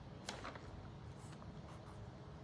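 Faint pen writing on notebook paper, with a couple of brief paper rustles near the start as a notebook page is turned.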